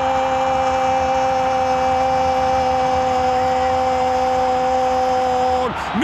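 A Spanish-language football commentator's long, drawn-out "gol" cry, held on one steady pitch and dropping off near the end, with stadium crowd noise beneath.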